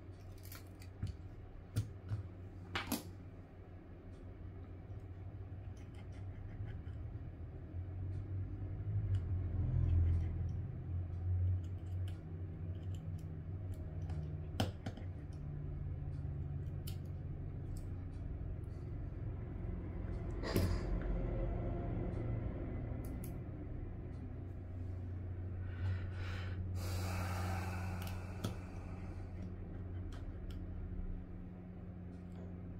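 Close-up handling noises of an iPhone XR being opened and its internal bracket screws worked with a precision screwdriver: scattered small clicks and taps over a steady low hum, with a couple of seconds of rasping near the end.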